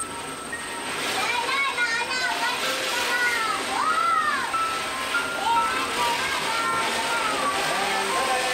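Background music with children's high, excited voices, including a few high rising-and-falling calls about three to four and a half seconds in.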